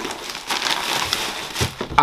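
Plastic bag and bubble wrap crinkling and rustling in the hands as an item is lifted out of a cardboard box, with irregular small crackles.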